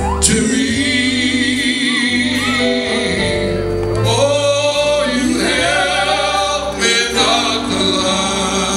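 A gospel song sung live: a male lead singer holds long notes with vibrato over instrumental accompaniment with steady bass notes, and the congregation sings along.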